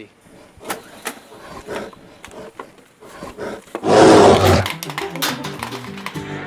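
A few sharp knocks and clinks, then about four seconds in a single loud, growling, bear-like roar lasting under a second.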